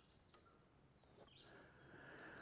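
Near silence: faint outdoor room tone.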